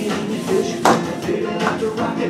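Line-dance music playing over dancers' boot steps on a wooden floor, with one sharp knock a little before the middle.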